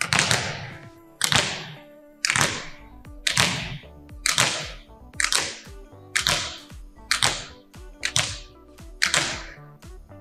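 Volleyballs hit hard out of the hand and driven into a gym's hardwood floor, about ten slaps in a steady rhythm of roughly one a second, each followed by echo off the hall; the two players' strikes sometimes land almost together. Soft background music plays underneath.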